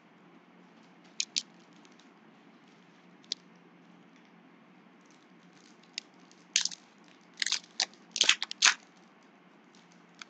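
Foil trading-card pack wrapper crinkling and tearing as it is opened by hand: a few short crackles in the first few seconds, then a louder run of crinkles in the second half.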